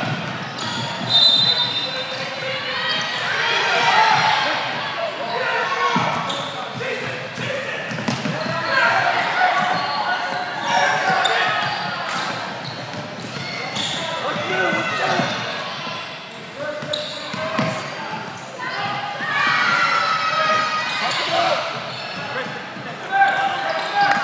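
Basketball game in a gymnasium: a ball bouncing on the hardwood floor again and again under a steady mix of spectators' and players' voices and shouts, all echoing in the large hall.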